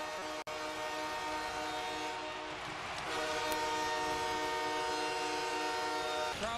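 Hockey arena goal horn blaring after a home-team goal, in two long blasts with a break of about a second between them, over crowd cheering.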